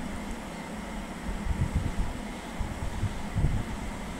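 Steady room noise with a fan-like hum. From about halfway through come low, irregular rumbling bumps, typical of the microphone picking up handling as a bottle is lifted into view.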